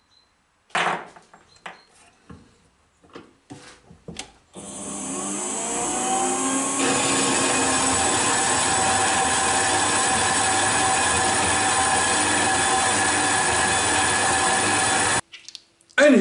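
Small horizontal metal-cutting bandsaw: a few knocks as the bar is clamped in its vise, then the saw starts about four and a half seconds in and runs steadily while the blade cuts through the metal bar, stopping suddenly about a second before the end.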